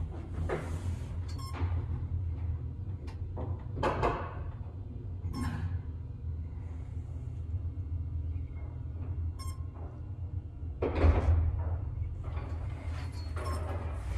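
Vintage Otis AC geared traction elevator car travelling upward: a steady low hum of the ride, with scattered clicks, knocks and rattles from the car, and a louder knock about eleven seconds in.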